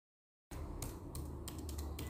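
Keyboard typing sound effect: keys clicking at an uneven pace over a low hum, starting about half a second in.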